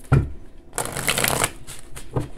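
A deck of reading cards shuffled by hand: a soft knock just after the start, then a burst of riffling cards lasting under a second in the middle.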